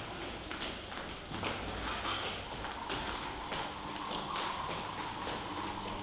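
A skipping rope slapping a wooden gym floor in a steady rhythm, about three to four taps a second.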